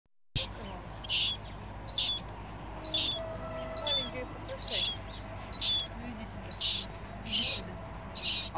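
Immature mew gull (common gull) calling repeatedly: nine high-pitched, slightly arched calls, about one a second.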